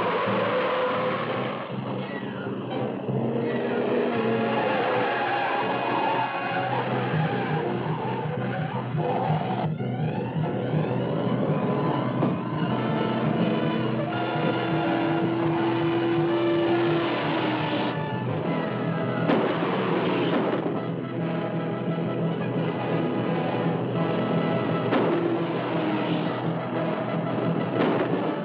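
Film-score music on an old, narrow-band soundtrack, with a speeding car's engine and skidding tyres under it.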